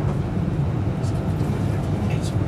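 Interior running noise of a Class 390 Pendolino electric multiple unit travelling at speed: a steady low rumble of wheels on track, heard inside the passenger carriage.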